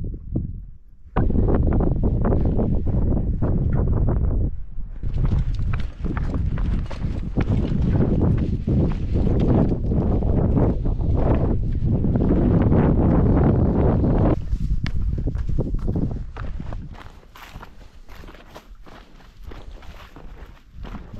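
Hiker's footsteps on sandstone and loose gravel, a steady run of crunching, knocking steps. For most of the time they sit under a loud low rumble, which drops away at about fourteen seconds, leaving the steps clearer.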